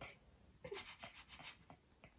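Near silence with a few faint soft rubbing strokes in the middle, a hand stroking someone's hair.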